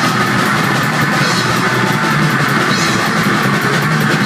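Heavy metal band playing live: electric guitar over fast, steady drumming on a drum kit, loud and continuous.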